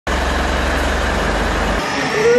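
Pickup truck engine idling, a steady low rumble that cuts off abruptly near the end.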